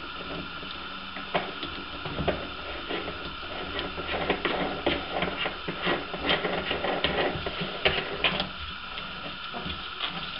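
Irregular clicking and scraping from hand work on a ceramic toilet pan, getting busier about four seconds in and easing off near the end, over a faint steady hum.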